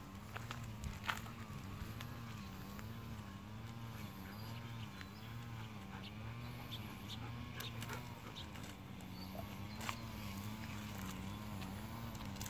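Golden retrievers' claws clicking now and then on a concrete lane as they walk, over a steady low hum that wavers up and down in pitch about one and a half times a second.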